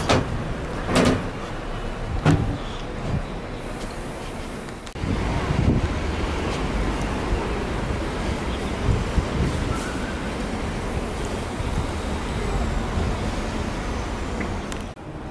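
Steady outdoor urban background noise, a low traffic-like rumble, with a few sharp knocks in the first couple of seconds; the noise grows denser and louder about five seconds in.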